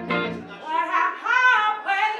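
Live band music: a woman sings a held, bending vocal line, with electric guitar and bass chords struck rhythmically at the start.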